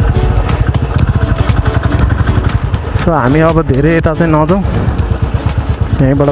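Motorcycle engine running under way, a steady low pulsing throughout. A singing voice with held, wavering notes comes in over it about halfway through for a second or two.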